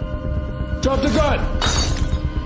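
A glass bottle shattering in a short, loud crash near the end, over tense background music with held notes. A brief vocal cry, rising and falling, comes about a second in.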